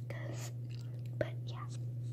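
A person whispering softly, with a sharp click about a second in, over a steady low hum.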